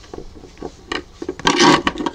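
Hands rubbing and scraping against crocheted cotton yarn as a yarn tail is worked into the stitches, with faint scattered ticks, then a louder rasping rub about a second and a half in.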